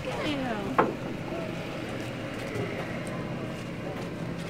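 A young child's high voice for under a second, cut by a single sharp knock, then steady outdoor background noise.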